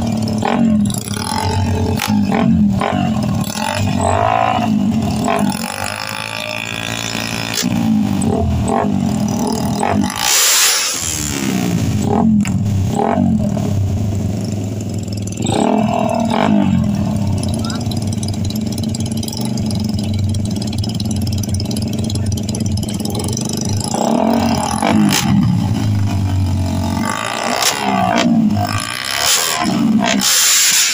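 Two racing motorcycles with aftermarket exhausts idling and being revved at the starting line, their pitch rising and falling again and again, with people talking over them.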